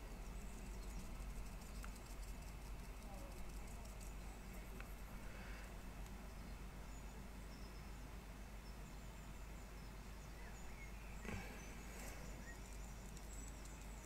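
Quiet room tone with a faint, fine scratching from a paintbrush dabbing gouache onto paper, and one small knock near the end.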